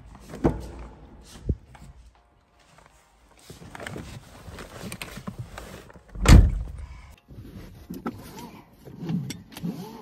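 A car door opened with sharp clicks of the handle and latch, rustling as someone climbs into the seat, then a heavy thump about six seconds in, the door being shut.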